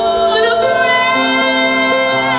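Student choir singing in harmony, several voices holding long notes, the top voices wavering with vibrato through the second half.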